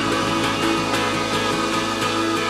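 Live rock band playing through a PA in a large hall, with several notes held steady over a dense, noisy wash of distorted sound.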